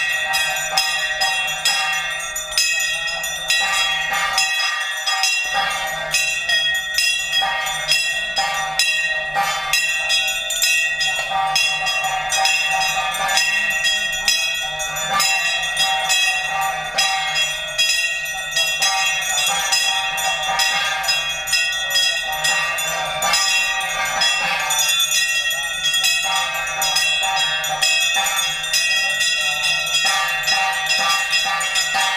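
Temple bells ringing rapidly and without a break, a dense clangour of overlapping metallic tones, as rung during the aarti, the waving of the lamp flame, in a Hindu homa.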